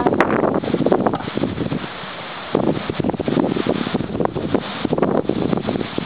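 Wind buffeting the microphone in irregular gusts, easing briefly about two seconds in, then picking up again.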